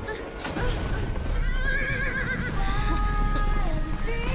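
A horse whinnying once, a wavering call about a second and a half in that lasts about a second, over film-score music with held notes.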